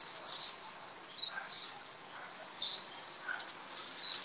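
Birds chirping: short high chirps repeating at irregular intervals over a faint steady hiss.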